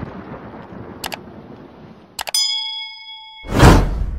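Editing sound effects: the rumbling tail of an explosion fades out, a sharp click sounds about a second in, and then a metallic ding rings for about a second. A loud whoosh-like swell follows near the end.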